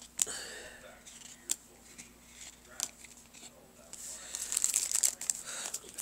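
Card packaging being handled and opened: plastic and foil crinkling and tearing with a few sharp clicks, the rustling growing louder over the last two seconds.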